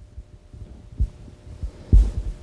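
A few short, low, dull thumps in a pause between speech, the loudest just before the end, over faint low room rumble.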